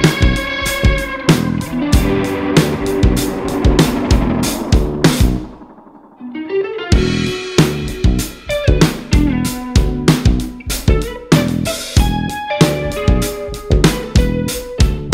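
Guitar-led band music with a steady beat. About five and a half seconds in the band drops out to a quiet break for over a second, then comes back in.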